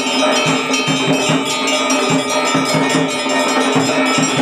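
Temple bells ringing loudly and continuously during an aarti lamp offering, over a quick, steady low beat of about three to four strokes a second.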